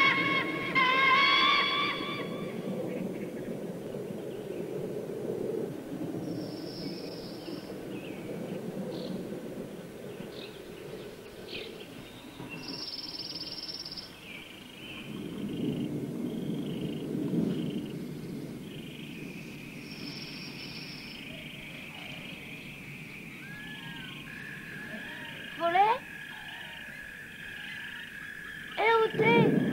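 Film soundtrack music fading out about two seconds in, giving way to outdoor ambience of wildlife calls: short high chirps, steady high trilling and a few rising whistled calls, one loud call near the end.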